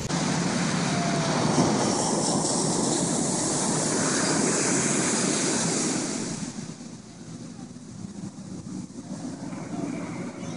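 Ocean surf washing onto the beach with wind buffeting the microphone; the noise drops to a lower level about six and a half seconds in.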